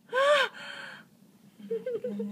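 A woman's short gasp, a single voiced 'oh' that rises and falls in pitch, as she reacts in shock and disgust to the skin extraction. A faint low murmur follows near the end.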